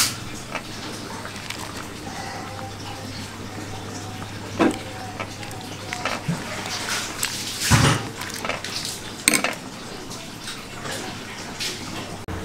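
Metal ladle clinking and scraping against the side of a pot of boiling spinach soup as it is stirred: several separate knocks, the loudest about eight seconds in, over a steady low hum.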